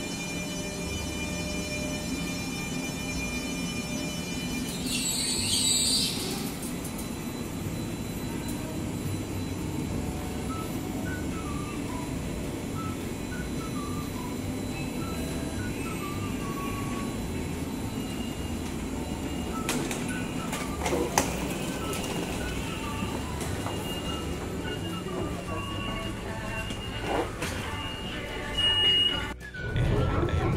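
KLIA Transit electric train running slowly alongside the platform as it comes in, with a steady rumble and hum. A short hiss of air comes about five seconds in. Music plays underneath.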